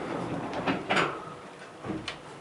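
Sliding doors of an Otis hydraulic elevator closing: a sliding run with a couple of short knocks about a second in.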